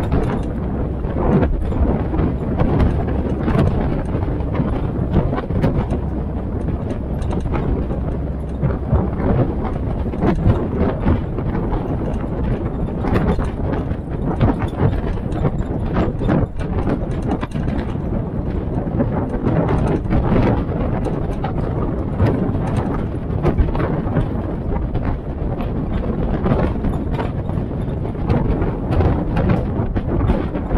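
Open military-style Jeep driving along a gravel track: the engine running steadily under a dense clatter of small knocks and rattles from the body and the tyres on gravel.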